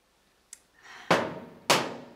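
Two loud, sharp knocks a little over half a second apart, each ringing out briefly, after a faint click.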